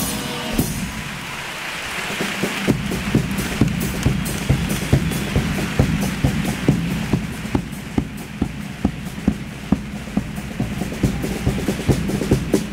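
Audience applause fading over the first few seconds, then the chirigota's percussion starting a steady beat of about three strokes a second over a low instrumental accompaniment.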